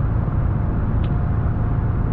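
Steady low rumble of a truck's engine and tyres heard from inside the cab while cruising on a highway, with a faint steady whine above it.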